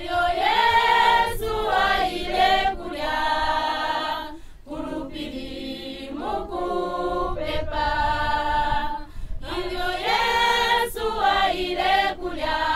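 A group of voices singing together unaccompanied, in several held phrases with short breaks between them.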